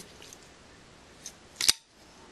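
A Kershaw Cyclone folding knife opened on its SpeedSafe assisted-opening mechanism: a faint click about a second in, then a sharp snap near the end as the blade swings out and locks.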